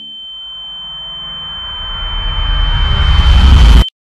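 A rising transition sound effect in the soundtrack: a steady high tone held under a swell that grows louder for nearly four seconds, then cuts off suddenly into silence.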